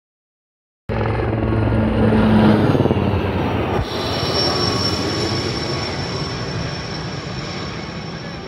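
Aérospatiale Alouette III and Gazelle turbine helicopters flying overhead: steady rotor and engine noise starting about a second in, with a high steady whine from about four seconds in, slowly fading.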